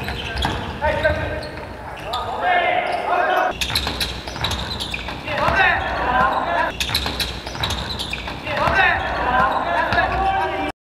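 Basketball game sounds in a large echoing sports hall: the ball bouncing on the court with sharp thuds, and players' voices calling out in short bursts.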